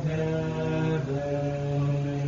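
Orthodox monastic chanting at Vespers: voices hold a long, drawn-out note of the hymn melody without clear words, stepping down to a lower note about halfway through.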